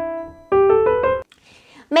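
Piano-like keyboard notes playing a one-measure rhythm example in 3/4 time that mixes note values. A held note fades out, then about half a second in a run of quick short notes follows and stops abruptly.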